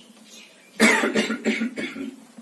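A man coughing, a quick run of about four coughs starting a little under a second in, the first the loudest.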